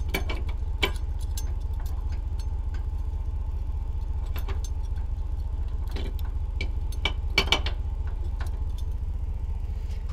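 Steel trailer safety chains clinking as they are handled and hooked onto the truck's hitch receiver: scattered sharp metal clinks, a cluster of the loudest about seven seconds in. Under them runs a steady low rumble.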